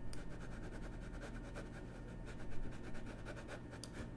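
Faint, rapid clicking and ticking from a computer mouse working the editing software, several clicks a second, over a low steady room hum.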